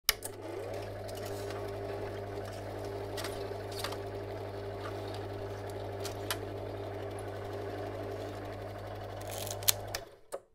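Film projector sound effect: a steady mechanical whir and hum, its motor note rising as it starts in the first second, with scattered clicks and pops. It cuts off at the end.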